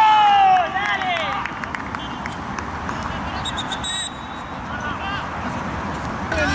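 Players shouting in celebration of a goal on an outdoor football pitch, loudest in the first second and a half, then dying down to scattered distant voices and open-air noise. A brief shrill whistle, like a referee's pea whistle, sounds about three and a half seconds in.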